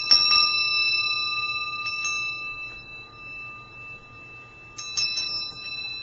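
Tibetan tingsha cymbals struck together at the start and again about five seconds in, each strike leaving a high, clear ringing tone that slowly dies away.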